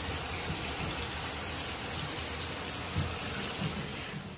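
Water running steadily, with a faint knock about three seconds in.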